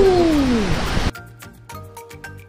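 A small group of people cheering, one voice holding a long falling "whoa", cut off abruptly about a second in. Then background music of light, quick plucked notes with a steady beat.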